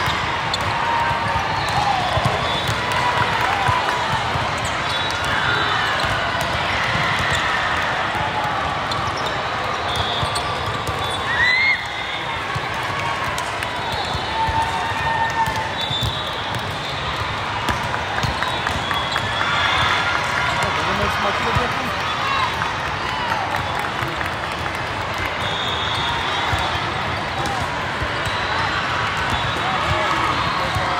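Busy volleyball tournament hall: a din of many voices, with volleyballs being struck and bouncing on the courts and several short whistle blasts.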